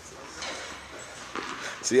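Low background noise with faint voices, then a man starts speaking near the end.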